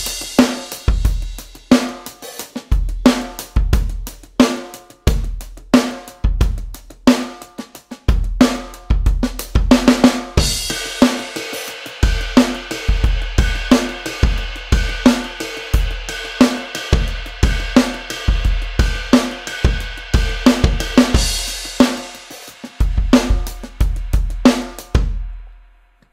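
Drum-kit samples finger-drummed on the pads of a Native Instruments Maschine MK3: a steady kick, snare and hi-hat beat. About ten seconds in it moves to a ride-cymbal groove with a sustained cymbal wash, and goes back to the tighter hi-hat beat after about twenty seconds. The beat stops shortly before the end.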